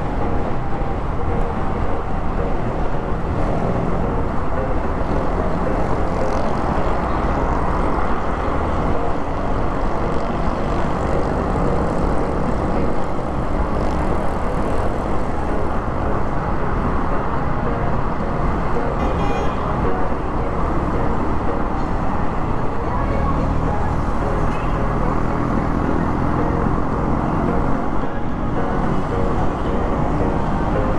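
Motorcycle riding in city traffic: a steady mix of engine, road and wind noise, with surrounding traffic.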